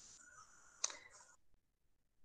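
Faint hiss with a single sharp click just under a second in, then near silence.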